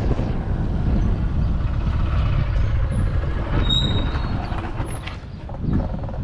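Steady low rumble of a moving vehicle with wind on the microphone, easing off near the end, with a few faint short high-pitched tones about halfway through.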